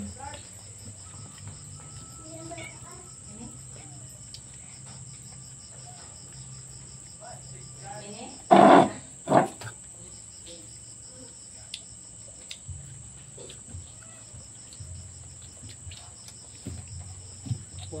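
Crickets trilling steadily in the background, a continuous high-pitched pulsing chirp, with a short loud spoken word about halfway through.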